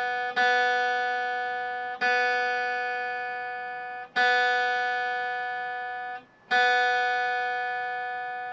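The open B string of an electric guitar plucked four times, about every two seconds, each note ringing out and fading. It is being tuned down from slightly sharp by loosening its tuning peg between plucks.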